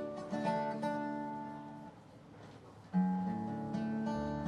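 Acoustic bluegrass band playing an instrumental intro, led by strummed acoustic guitar chords that ring and fade. The music dips quieter around the middle, then a fresh chord comes in loudly near the end.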